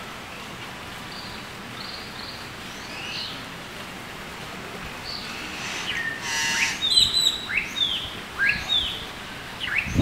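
Small birds chirping: faint high chirps at first, then a short harsher call about six seconds in, followed by a run of loud, quick chirps that sweep down in pitch, two or three a second.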